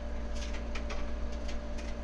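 Steady low electrical hum with a few faint ticks.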